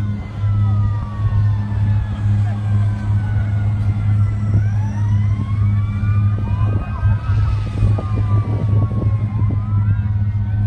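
Several sirens from airport fire trucks wailing at once, their pitches slowly rising and falling and overlapping, over a steady low drone.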